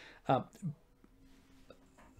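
A man's hesitant "uh" followed by a short vocal sound, then a quiet pause with only faint room hum.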